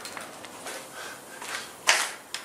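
Low, steady background noise with one sharp knock a little before the end.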